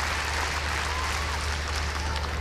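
Arena crowd applauding, an even wash of many hands clapping, over a steady low hum.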